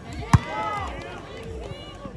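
A single sharp smack of a volleyball struck by hand, about a third of a second in, followed by players and onlookers calling out.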